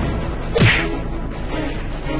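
A single whoosh sound effect about half a second in: a quick swish with a steeply falling pitch, as for a hit in a cartoon fight, over background music.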